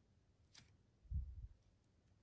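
Near silence with faint handling noise: a small click about half a second in and a soft low thump a little after a second in, as fingers handle a small push-button switch and its soldered wires.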